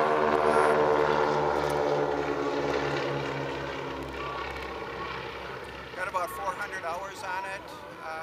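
A propeller-driven light airplane flying past, its engine and propeller drone loud at first, then dropping slightly in pitch and fading away over about four seconds.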